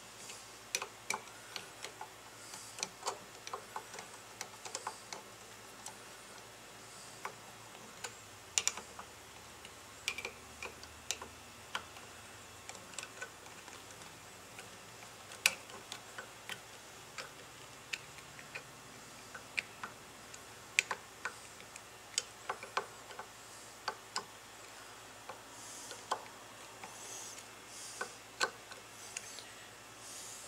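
Irregular small metallic clicks and taps of a screwdriver turning and seating the screws of a Fispa SUP150 mechanical fuel pump held in a bench vise, with a few sharper knocks among them.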